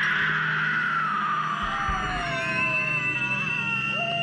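Long, high-pitched screaming sound, several sustained tones sliding slowly downward, with a steadier higher tone joining about halfway through, over a low steady drone.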